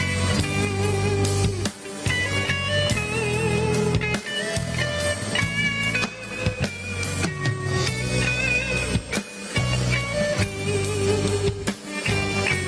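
Live folk band playing a zamba on acoustic guitars, an instrumental passage with a sustained melody line over a steady bass, phrased in short sections.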